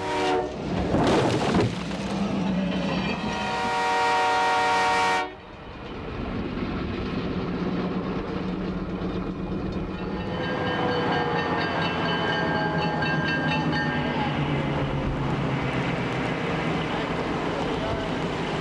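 Air horn of a CN snow plow train's EMD F7 diesel locomotives blowing a long chord over the rush of thrown snow, growing louder until it cuts off suddenly about five seconds in. After that comes the steady drone of the diesels and the plow's rush of snow, with the horn sounding again more faintly from about ten to fourteen seconds in.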